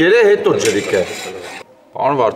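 A man speaking loudly in a rough, breathy voice, breaking off about a second and a half in.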